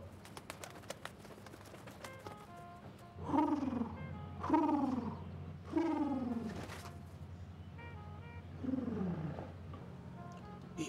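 Four low, pigeon-like coos, each falling in pitch and lasting under a second: three in quick succession a few seconds in, then one more near the end.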